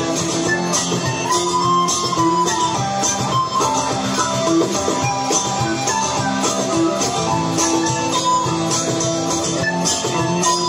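Live Irish folk band playing an instrumental passage: a steadily strummed acoustic string instrument with a tin whistle carrying the melody.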